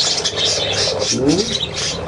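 Pet budgerigars chattering and chirping, many quick high twitters overlapping, with a short rising call a little over a second in.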